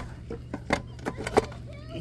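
Sharp clicks and knocks of a 50-amp RV surge protector's plug being worked into a power pedestal receptacle: a loud click at the very start, then two more at intervals of about two-thirds of a second, with a few lighter ticks between.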